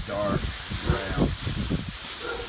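Wind buffeting the microphone with a continuous hiss, and loose plastic masking sheeting rustling and flapping in the wind. A brief bit of a man's voice near the start.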